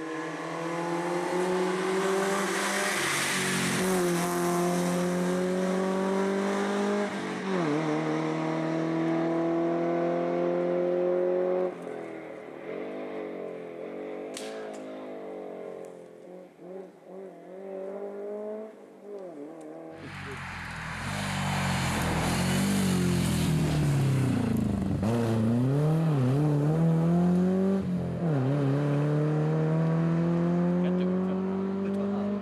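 Rally car engines at full throttle, revs climbing in pitch and breaking at each upshift. The engine fades as the car draws away. Then another car is heard louder and closer, its revs dropping and climbing again through the corners.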